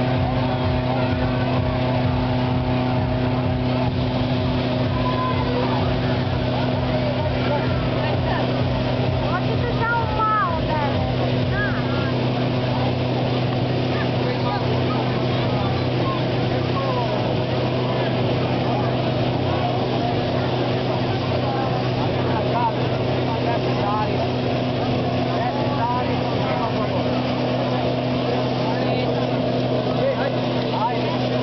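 Hot air balloon inflator fan's petrol engine running steadily at a constant pitch, blowing air into the balloon envelope. Crowd chatter is heard over it.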